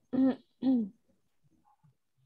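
A person clearing their throat: two short voiced sounds about half a second apart, each falling in pitch.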